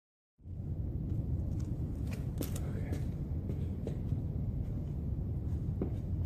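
Steady low wind rumble on the microphone, with a few soft taps and scuffs of sneaker footsteps on concrete.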